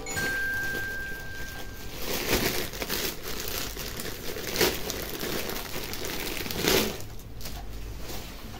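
Thin clear plastic bag crinkling and rustling in the hands as it is pulled open and a folded cloth wall hanging is drawn out of it, in irregular scrunches.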